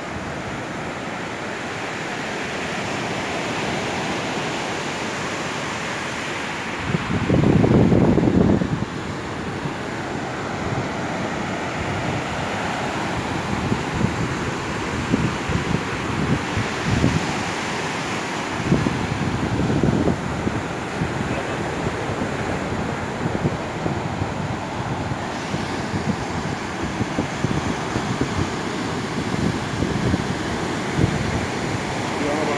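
Ocean surf breaking and washing up a sandy beach, a steady rushing noise, with wind buffeting the microphone in low rumbles, loudest in a burst about seven seconds in.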